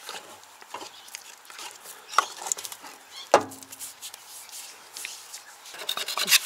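Light clicks and scrapes of a small plastic tub of putty and its lid being handled, with one sharp click a little over three seconds in.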